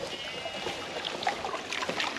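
Water running steadily from a hose into a metal stock trough, fed from an IBC tank on a pickup; the trough is full to overflowing.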